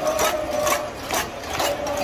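Street protest crowd making a regular beat of sharp strikes, about two a second, over a steady crowd noise with a held tone beneath.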